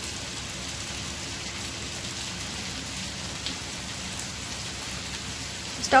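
Pepper chicken frying dry in a pan, a steady sizzle with a few faint crackles.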